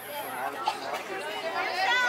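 Indistinct chatter of several overlapping voices.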